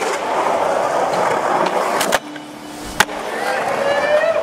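Skateboard wheels rolling on a concrete bowl, with two sharp clacks, about two and three seconds in. Between the clacks the rolling sound drops away.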